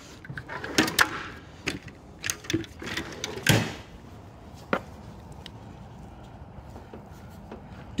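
Hand tools being rummaged in a metal tool cart: a string of clicks and clatters, the loudest knock about three and a half seconds in, then only a faint background for the second half.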